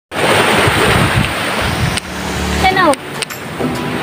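Wind buffeting the microphone over the wash of surf, with a short falling voice sound about two and a half seconds in and two sharp handling clicks just after.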